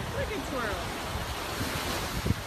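Surf washing onto a sandy beach, a steady hiss, with wind buffeting the phone's microphone in low, uneven rumbles.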